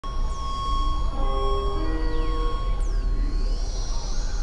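Experimental electronic synthesizer drone music: several steady held tones over a deep low hum, a cluster of short held notes in the middle, and a few quick downward pitch sweeps.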